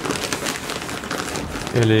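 Crinkling rustle of a trail-running pack's synthetic fabric being handled, a dense run of small crackles. A voice starts speaking near the end.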